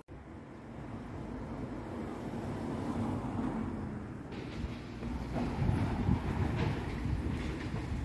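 A train running past nearby: a rumble that builds over the first few seconds and grows louder and brighter about four seconds in.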